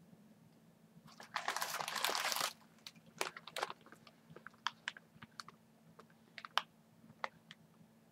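Cellophane wrapping and tissue paper crinkling as a wrapped bundle of flowers is lifted out and handled. A dense rustle starts about a second in and lasts about a second, then gives way to scattered sharp crackles.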